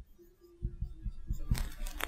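Marker writing on a whiteboard: a run of soft low taps, then scratchy pen strokes from about a second and a half in.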